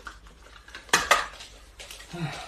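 Cardboard box and a hard plastic tool being handled: two sharp clacks close together about a second in, with lighter rustling and clicking around them.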